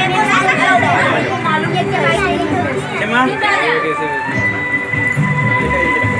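Many people talking over one another in a crowded room, with music playing underneath. A steady high tone comes in about four seconds in and holds.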